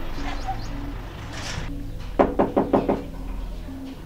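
Knocking on a door: a quick run of about five raps a little past two seconds in, over background music.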